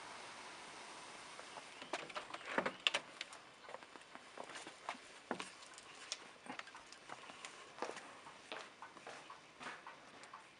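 Caustic soda solution fizzing inside a steel bike frame's seat tube as it dissolves the stuck aluminium seat post and gives off hydrogen. A soft hiss at first, then from about two seconds in, irregular crackling pops and spits of bursting bubbles.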